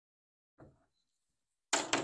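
A glass whiskey bottle set down on a tabletop: a sudden knock near the end with a short noisy tail, after a faint brief sound about half a second in; otherwise near silence.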